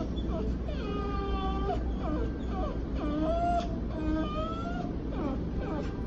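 A young dog whining in several long, high-pitched cries with short gaps between them, some held on a steady pitch for about a second. This whining is the dog's way of crying instead of barking.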